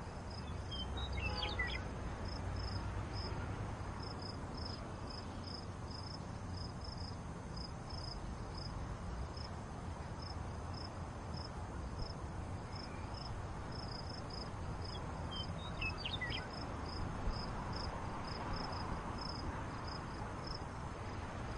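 Crickets chirping steadily, a stream of short high chirps over low background noise, with two brief gliding bird-like calls, one about a second in and one near sixteen seconds in.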